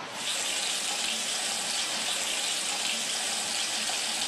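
Water running steadily from a tap, a continuous even hiss that starts just after the beginning.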